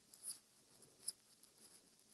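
Near silence: room tone with a few faint, short scratchy clicks, the sharpest about a second in.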